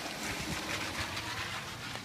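Steady background noise: an even hiss with faint crackle and no distinct events.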